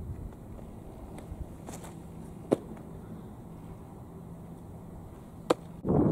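A baseball thrown as a curveball smacks into the catcher's mitt with a single sharp pop about two and a half seconds in. A second sharp pop near the end is the ball being caught back in a glove, over a faint steady outdoor background.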